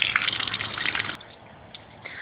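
Water gushing from a bell siphon's outlet pipe in full siphon and splashing onto concrete, a steady rush that cuts off suddenly about a second in.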